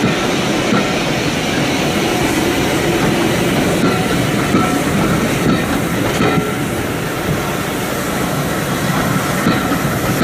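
Passenger coaches of a passing train rolling by at close range, a steady rumble with the wheels clattering over the rail joints.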